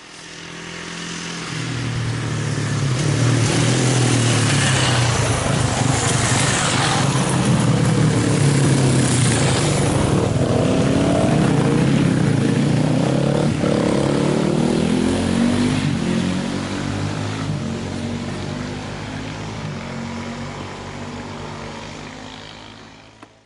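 An enduro motorcycle's engine approaches, grows loud as the bike passes close by, its note rising and falling with the throttle, then fades away over the last few seconds.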